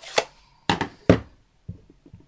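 Three short knocks on a wooden tabletop as a plastic ink pad case is handled and a clear acrylic stamp block is pressed onto the pad. The loudest thump comes just after a second in.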